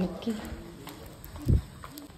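A single dull thump about a second and a half in, with a few faint clicks and a trace of voices around it.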